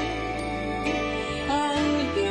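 A woman singing a slow sacred solo song with vibrato over an instrumental accompaniment with sustained bass notes.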